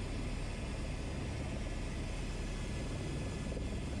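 Airbus H125 helicopter's main rotor and single turboshaft engine heard from inside the cabin on approach to landing: a steady, even drone with a low rumble underneath.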